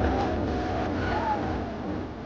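Live-venue noise from an audience, with music from the DJ set underneath, easing off slightly near the end.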